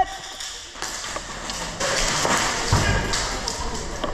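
Footsteps and gear rustling as a player walks across a concrete floor, with a few dull thuds and voices in the background.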